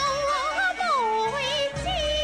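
Cantonese opera music: a single melody line that wavers with vibrato and slides down about halfway through, over the accompanying ensemble.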